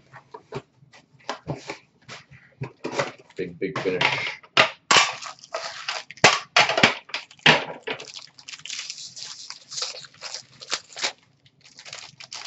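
Hands handling metal trading-card tins and crinkling and tearing open a card pack's wrapper: irregular clicks and rustles, with the crinkling thicker in the second half.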